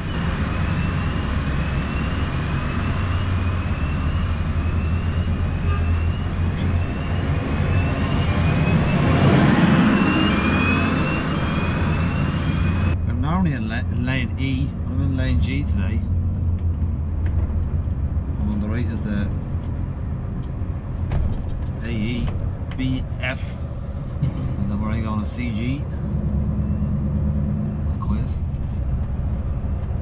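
Scania S650 V8 truck engine running steadily under light load, heard from inside the cab while driving slowly. Over the first dozen seconds a higher rushing noise carries a short rising chirp about once a second. That noise cuts off suddenly about a third of the way in, leaving the low engine drone.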